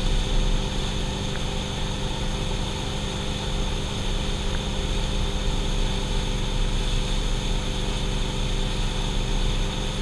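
Towing boat's engine running at a steady speed, a constant drone with water rushing from the wake.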